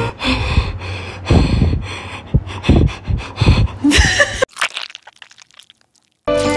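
Irregular short breathy sounds, like a person breathing or sniffing close to the microphone. They stop about four and a half seconds in and give way to near silence.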